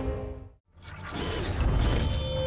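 Background music fades out to a moment of silence just over half a second in. A new passage of music and effects then starts, with scattered high clicks.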